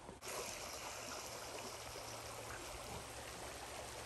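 Creek water running steadily, a faint, even rush with no distinct events.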